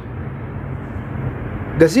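Steady low background hum and rumble in a short pause in the talk. A man's voice comes back near the end.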